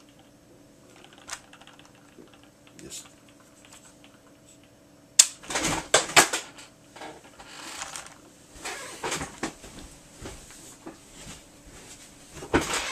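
The missile launcher of a Kenner M.A.S.K. Billboard Blast plastic toy snaps sharply as it fires about five seconds in. A burst of plastic clattering and rustling follows, then lighter handling clicks.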